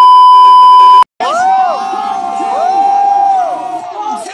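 A loud, steady test-tone beep lasting about a second, the TV colour-bars sound effect, cutting off abruptly. After a brief gap, an audience cheers with rising and falling whoops and yells.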